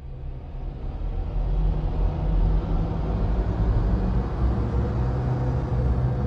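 Cinematic logo-reveal sound effect: a deep, dense rumble that swells up from nothing over the first second or two, then holds steady.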